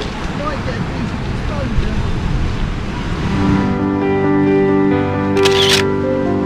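Waves breaking on a pebble shore, with wind, for the first three and a half seconds, then soft background music comes in. A camera shutter clicks about five and a half seconds in.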